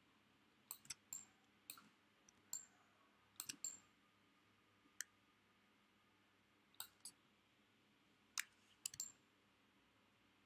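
About a dozen short, sharp clicks in irregular groups, some in quick pairs, over a faint steady background hiss.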